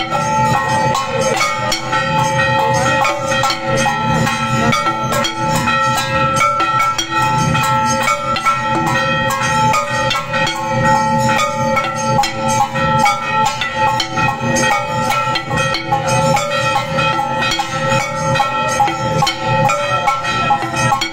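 Temple aarti music: fast, dense percussion of drums and jingling, cymbal-like strikes over several steady ringing tones that hold throughout.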